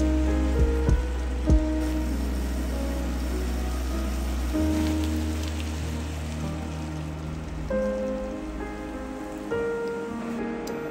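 Chicken thighs sizzling in a frying pan of onions and oil, a steady crackle, with a few knocks in the first two seconds.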